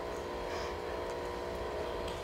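Steady room hum, a low rumble with several faint unchanging tones, as from a machine running steadily.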